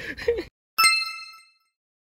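A single bright chime ding, an edited-in sound effect, struck about a second in and ringing out for about half a second, with dead silence before and after it.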